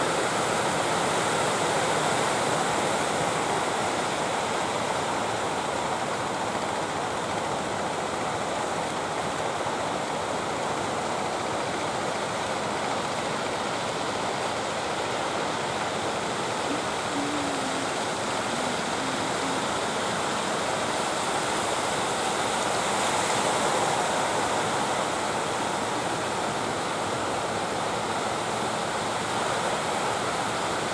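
Ocean surf breaking on the shore: a steady, unbroken rush of wave noise.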